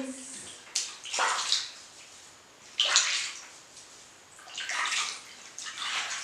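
Bathwater splashing in a bathtub as a baby is washed by hand, in four separate bursts with short quiet gaps between.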